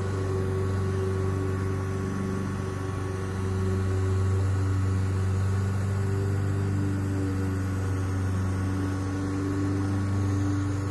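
The built-in mini compressor of a cordless handheld airbrush sprayer running steadily as it sprays coating: a low, even motor hum that gets a little louder about three and a half seconds in.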